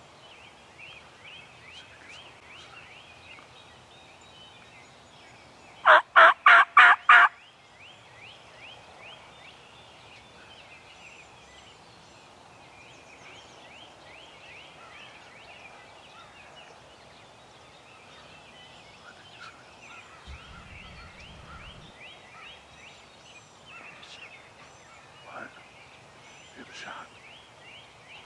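Wild turkey tom gobbling once: a loud, rapid rattling burst of about six pulses roughly six seconds in. Faint high chirping runs underneath.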